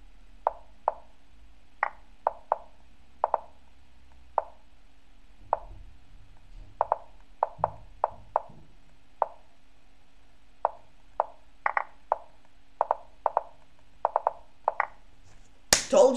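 Online chess move sounds from the Lichess board: short, sharp wooden clicks, one for each move by either player. They come in a fast, irregular patter, several a second at times, as both players rush their moves with only seconds left on their clocks in a bullet game.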